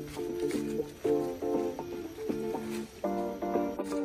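Background music: a melody of short pitched notes following one another in quick succession.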